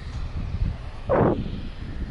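Wind buffeting the microphone, a steady low rumble, with a short louder rush of noise about a second in.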